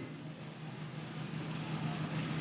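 Faint steady low hum with room noise, growing slightly louder, in a pause between spoken lines.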